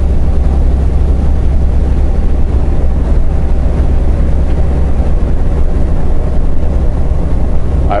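Semi truck cruising at highway speed, heard from inside the cab: a steady, loud low drone of engine and road noise with no change.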